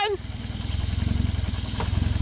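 Car engine running: a steady low pulsing drone that grows a little louder over the two seconds.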